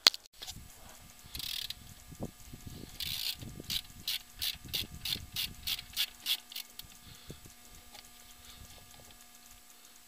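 Socket ratchet wrench clicking while valve cover bolts are backed out. A couple of short rasps come first, then a steady run of clicks at about five a second for a few seconds before they trail off.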